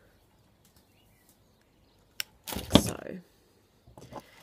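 A single sharp snip about two seconds in: flush cutters cutting half-millimetre fine silver wire off flush with the wood. A brief louder burst of noise follows just after.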